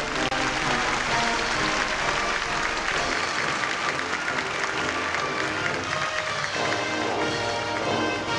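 Audience applause over a concert band's playing. About six and a half seconds in, the applause gives way and the band's music comes clearly to the fore.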